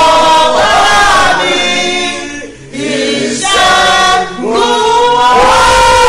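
Voices singing worship in long, held notes that slide between pitches, with a brief lull about two and a half seconds in.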